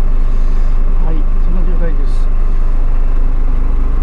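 Hino truck's diesel engine idling steadily, a loud low hum heard inside the cab.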